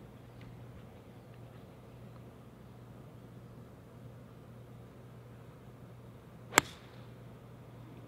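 A golf club striking a ball off the tee: one sharp crack about six and a half seconds in, with a brief ring after it, over a faint steady low hum.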